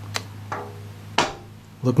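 A steady low hum, with a faint click near the start and a short hiss a little past the middle.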